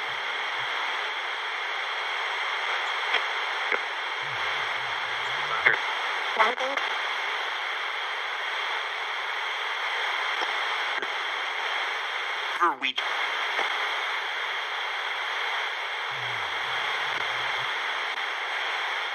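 Sony pocket AM radio used as a spirit box, its tuning swept across the AM band: a steady hiss of static with short clipped fragments of station audio breaking through every few seconds.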